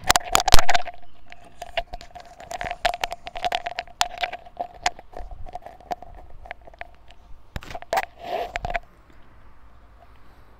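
A quick, irregular run of clicks and knocks, as of objects being handled close to the microphone, over a steady tone. All of it stops about nine seconds in.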